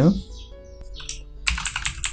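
Typing on a computer keyboard: a single keystroke about a second in, then a quick run of keystrokes over the last half-second.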